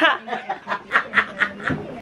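A person laughing in a quick run of short, breathy snickers, about four or five a second, growing quieter.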